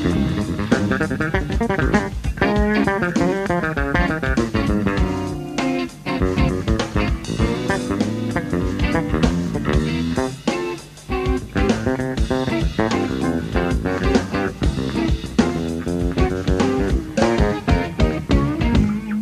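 Electric bass, electric guitar and drum kit playing together live, the bass running quick lines over busy drumming.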